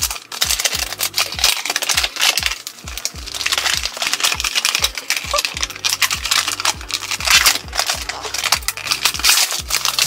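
Paper packaging crinkling and tearing as a taped-shut box is ripped open by hand, over background music with a steady bass beat.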